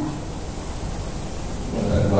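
Steady low rumble and hiss of a crowded hall's room noise during a pause in a man's speech.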